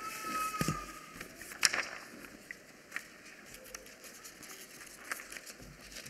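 Soft rustling and a few scattered faint clicks as Bible pages are leafed through on a wooden lectern, picked up by the pulpit microphone. A faint thin tone sounds through the first second or so.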